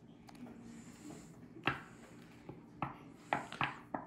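Playing cards being handled over a wooden table: a few light, short taps and rustles, mostly in the second half, against a quiet room.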